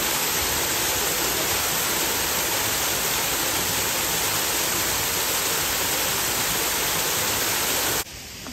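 Waterfall pouring down a rock face into a pool: a steady, even rush of falling water that cuts off abruptly at the end.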